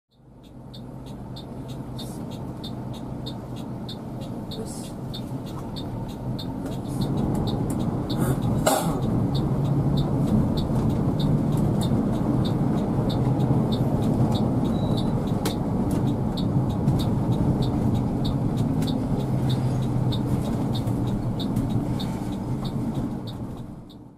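Cabin sound of a Mercedes-Benz OH 2542 tri-axle coach on the move: steady engine hum and road noise, fading in at the start and growing a little louder about seven seconds in. A regular high ticking runs over it, and there is a short burst of noise about nine seconds in.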